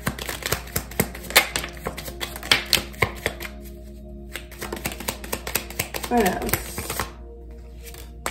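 A deck of oracle cards shuffled by hand: a quick, irregular run of crisp card clicks and slaps, thinning out about seven seconds in.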